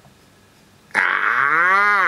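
About a second of quiet, then a man lets out a long drawn-out vocal sound, his voice sliding up in pitch and back down.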